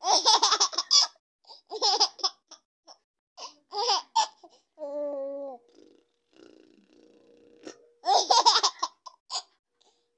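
Baby laughing in several short bursts of giggles, with one drawn-out vocal sound about halfway through.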